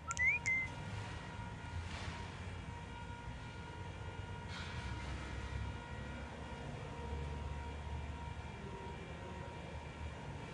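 Steady low background rumble of room noise with a faint constant hum. A brief rising beep-like chirp sounds right at the start.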